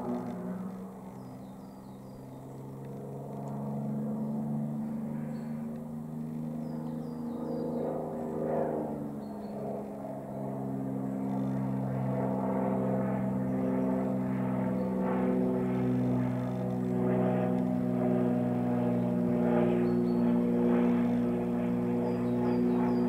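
XtremeAir XA42 aerobatic monoplane's six-cylinder Lycoming engine and propeller droning in flight. The pitch shifts as the plane manoeuvres, and the sound grows louder over the second half.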